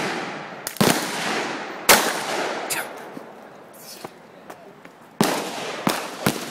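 Handgun shots at an outdoor range: loud single cracks about a second in, near two seconds and twice near the end, with fainter shots between, each ringing out in a long echo.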